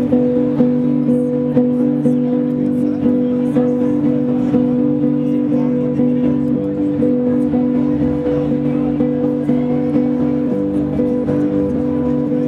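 Electric guitar played through a Keeley Eccos delay and looper pedal: a held chord layered with repeating notes that pulse about twice a second.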